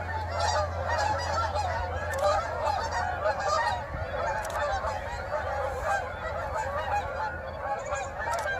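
A large flock of Canada geese honking in flight, many calls overlapping continuously.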